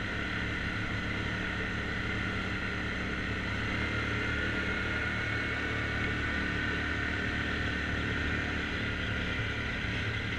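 ATV engine running steadily at a constant pace, heard from the rider's own quad, under a steady wash of noise.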